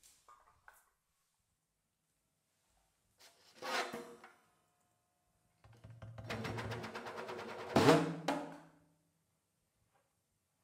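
Free-improvised snare drum played with sticks, together with an amplified cymbal. A short swell comes about three and a half seconds in, then a few seconds of rapid, dense strokes over a low steady tone, peaking in a sharp hit near eight seconds before stopping suddenly.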